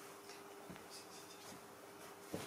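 Faint scratching and rustling of young macaques clambering over a plush toy on a fabric bedspread, with a few soft scrapes, over a steady low hum.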